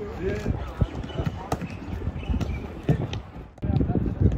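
Men's voices talking with footsteps and scattered sharp knocks. About three and a half seconds in, the sound cuts to a different, more open noise.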